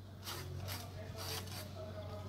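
Three short rasping scrapes in quick succession, from a tapper's blade working at the crown of a palmyra palm.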